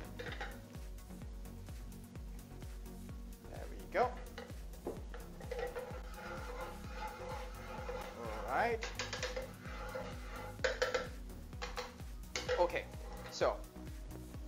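Background music, with a wooden spatula scraping and knocking against a wok several times as oil is spread around the hot pan.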